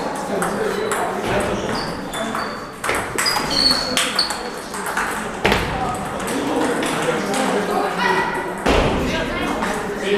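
Celluloid-type table tennis balls clicking and pinging off paddles and tabletops in rallies, the hits coming irregularly, some close and some from neighbouring tables, over the steady chatter of people in the hall.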